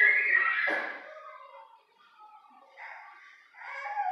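A high-pitched voice calling out, loudest in the first second, followed by fainter murmured voice sounds.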